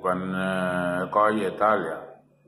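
A man's voice drawing out one long, level vowel for about a second, then a few more spoken syllables.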